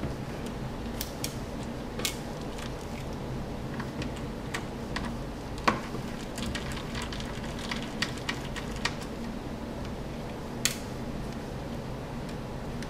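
Scattered small clicks and ticks of a screwdriver turning and handling laptop motherboard mounting screws, with a few sharper clicks, the loudest about halfway through, over a steady low hum.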